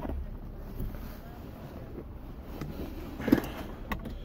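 Low steady rumble inside a car cabin, with one brief knock about three seconds in.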